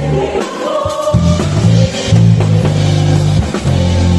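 Live gospel band: electric bass guitar playing held low notes, with a short break about half a second in before the notes resume, over a drum kit and singing voices.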